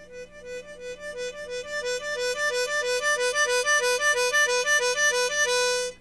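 Harmonica trill: two neighbouring notes alternated quickly, about four times a second, growing louder over the first couple of seconds and ending on a held note.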